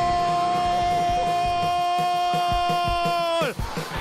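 A football commentator's long drawn-out goal shout, one unbroken "gooool" held on a single high pitch for about three and a half seconds and dropping off near the end, over background music with a steady beat.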